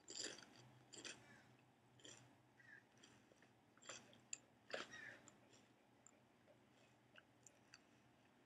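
A person chewing a regular-cut Lay's Southern Biscuits and Gravy potato chip: faint, crisp crunches about once a second that thin out after about five seconds as the chip is chewed down.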